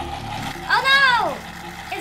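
A child's voice giving one drawn-out exclamation that rises and then falls sharply in pitch, over a steady low hum.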